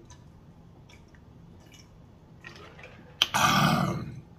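A person gulping from a large plastic drink jug, with faint swallowing clicks, then a loud, rough exhale of satisfaction about three seconds in, after the drink.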